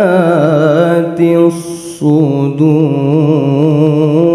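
Melodic Quran recitation (tilawah) in a single voice, holding long ornamented notes with a wavering, trilling pitch. There is a brief break about a second and a half in, then the voice takes up a new sustained phrase.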